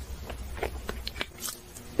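Close-miked eating sounds of someone biting into and chewing a slice of kiwi fruit: irregular short wet clicks and small crunches from the mouth.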